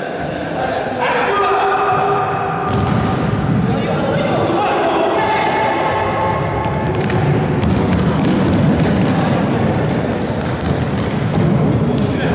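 Voices calling out in a large sports hall during a futsal game, with thuds of the ball being kicked and bouncing on the wooden floor. A dense low rumble of activity sets in a few seconds in and continues.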